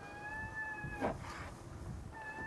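A high, steady whistle-like call lasting about a second, stopping just after a second in, followed by a brief soft rustle.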